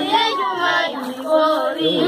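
A group of schoolchildren singing together in chorus.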